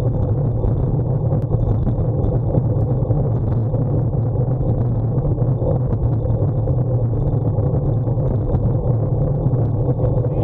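Steady wind rumble on the microphone of a bicycle-mounted camera riding at about 37 km/h, mixed with road noise from the tyres, with scattered light clicks.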